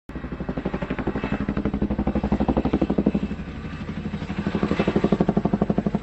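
Helicopter rotor chop: a fast, even beat of about ten pulses a second over a steady low drone, growing louder, easing briefly past the middle, then swelling again.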